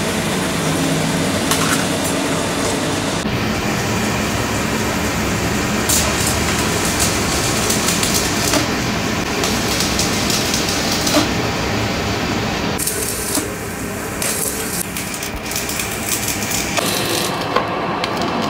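Electric arc welding on a steel trailer axle: a steady, loud crackling hiss that changes character at several points.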